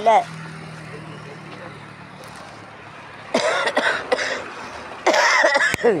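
A person laughing in two loud breathy bursts, about three seconds in and again near the end, with a sharp click during the second burst.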